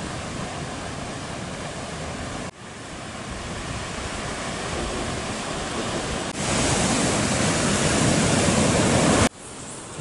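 Ocean surf washing over a rocky shore: a steady rush of noise that shifts level in abrupt steps. It is loudest from about six seconds in, then drops suddenly near the end.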